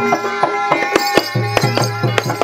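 Traditional Javanese barongan accompaniment in gamelan style. Kendang hand drums keep a quick, steady beat under sustained ringing metallic tones, with sharp percussion strikes.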